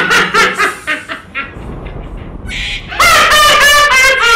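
A woman laughing loudly in rapid ha-ha-ha bursts, in two bouts: a short one at the start and a longer one about three seconds in.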